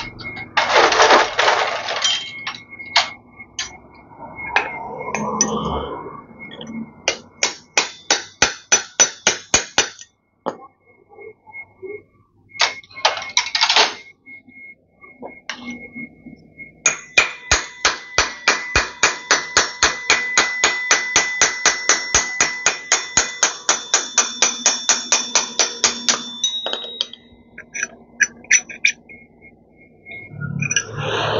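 A hammer striking metal in bursts of quick, regular blows, each with a short metallic ring. The longest run lasts about nine seconds in the second half.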